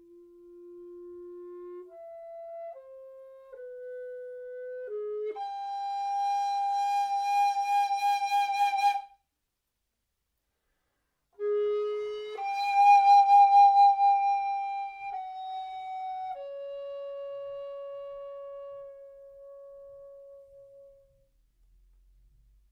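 Mollenhauer Helder tenor recorder playing slow, held notes that step from one pitch to the next, swelling from soft to loud. The loudest held notes pulse quickly. After a pause of about two seconds the line resumes and ends on a long note that fades away. The quiet notes are shaped with the instrument's lip-control mechanism, which narrows the windway.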